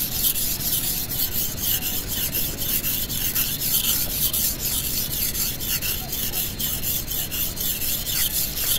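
A long steel knife blade being honed back and forth on a natural whetstone, a steady gritty rasping in quick, even strokes. This is the finer side of the stone, and the edge is already sharp enough to cut paper.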